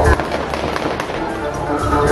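Loud music with a heavy bass breaks off just after the start, leaving a quieter run of crackling pops until the music comes back in at the end.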